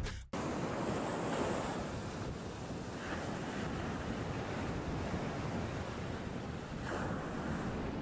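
Ocean surf washing in over a shallow beach, a steady rush of breaking water that swells a little now and then.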